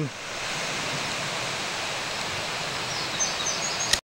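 Steady rush of a river running over rocky rapids, with a faint bird chirping near the end.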